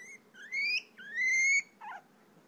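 Guinea pig squealing: three rising, whistle-like wheeks, each longer than the last, followed near the end by a short, lower falling call.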